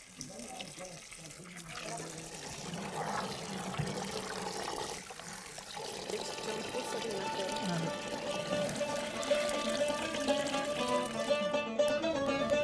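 Tap water pouring onto broad beans in a bowl as they are rinsed by hand. About halfway through, background music with plucked strings comes in and grows louder.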